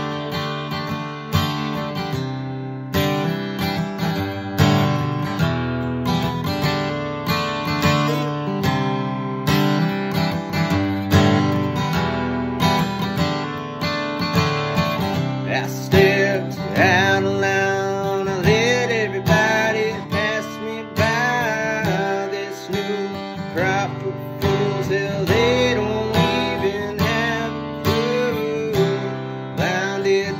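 Steel-string dreadnought acoustic guitar strummed in a steady rhythm through an instrumental break in the song. From about halfway through, a man's voice joins with wordless sung notes that slide up and down over the guitar.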